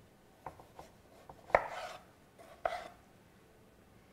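Kitchen knife cutting the rind off a half honeydew melon on a wooden cutting board: a few faint taps and short slicing scrapes, the loudest about a second and a half in.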